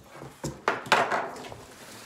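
Cardboard box and plastic-wrapped items being handled, with a few sharp knocks and crinkles between about half a second and one second in.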